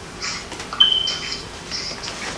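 Soft rustling as Bible pages are leafed through, in three short bursts, with a thin high whistle-like tone held for about half a second just under a second in.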